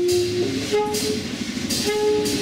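Free-jazz quartet playing live: trumpet and tenor saxophone sound long held notes over a busy low line of double bass and drums, with cymbal crashes near the start and end.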